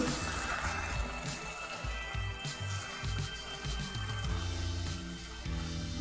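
Background music with a low bass line and a few held tones.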